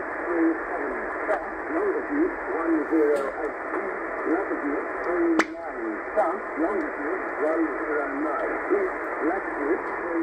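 Australian marine weather broadcast from station VMC: a voice reading over steady static, received in upper sideband on 12365 kHz shortwave and heard through a Tecsun PL-990X radio's speaker. The audio is narrow and thin, with one sharp click about halfway.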